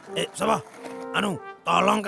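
Two short pitched vocal sounds from a cartoon character, each rising then falling in pitch like a questioning "hmm", over soft background music. A man starts talking near the end.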